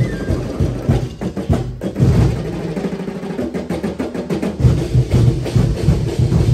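Festival drum ensemble playing fast, dense tribal drumming with clacking wooden hits. Deep bass drums beat heavily about two seconds in, drop back, and come in strongly again near the end.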